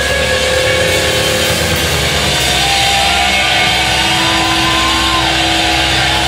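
Rock band playing live, loud and dense, with long held notes ringing through.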